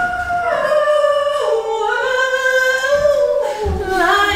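A vocal warm-up: a single high voice sings long held notes without accompaniment, moving in steps from one note to the next.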